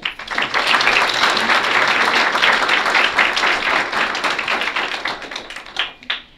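Audience applauding: a dense patter of many hands clapping that starts at once, holds steady, and fades out near the end.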